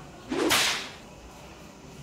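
A single rising whoosh sound effect, about half a second long, sweeping up from low to very high and fading out.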